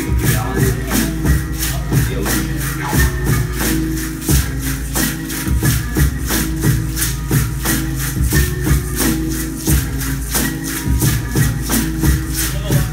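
Hand rattles shaken in a steady rhythm, about three shakes a second, over sustained low pitched tones with a deep beat.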